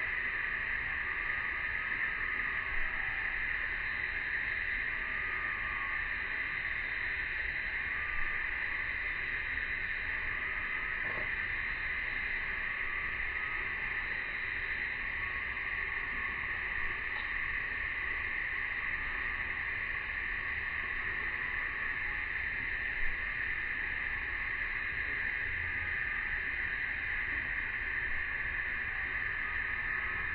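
A steady, even drone of a cicada chorus, unchanging throughout, with a few faint clicks.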